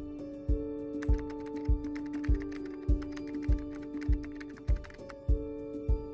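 Background music with a steady beat: a soft low thump about every 0.6 seconds under held chords. Light clicking comes in about a second in and stops near the end.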